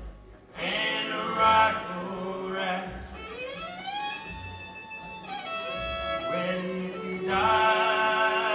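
Live bluegrass string band playing an instrumental passage: fiddle with a long sliding note that rises and falls in the middle, over mandolin and banjo and a low beat about once a second. The music dips briefly just after the start.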